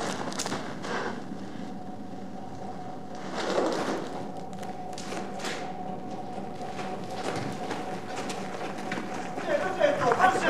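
Indistinct voices with scattered thuds and knocks over a steady hum.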